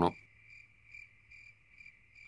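Faint crickets chirping: short chirps repeating about every half second over a steady high trill, a night-time ambience.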